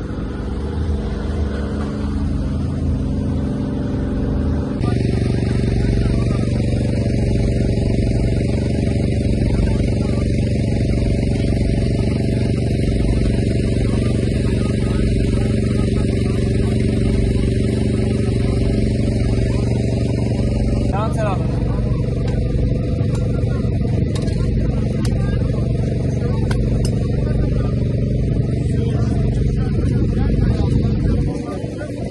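A steady engine-like hum with indistinct voices mixed in. The hum's pitch and mix change abruptly about five seconds in and again about twenty-one seconds in.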